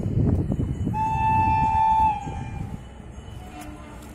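A locomotive horn blows one steady blast of about a second, in two close notes, over the low rumble of a train. It cuts off about two seconds in, leaving quieter station ambience.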